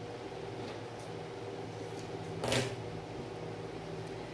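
Cotton fabric strips being handled and laid on a cutting mat: soft rustles and a few light clicks, with one brief sharper rustle about two and a half seconds in, over a steady low hum.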